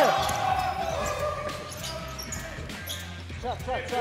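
Basketball bouncing on an indoor court during play, a series of short knocks, with brief voices on court.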